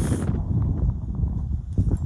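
Wind buffeting a phone's microphone, a steady low rumble, with a few light knocks in the middle.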